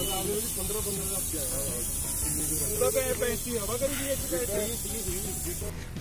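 Air hissing steadily out of an off-road tyre's valve as the tyre is let down, under background voices; the hiss stops shortly before the end.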